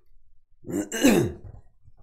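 A man's single short vocal burst: a rough, breathy sound that falls in pitch, lasting under a second, about halfway through.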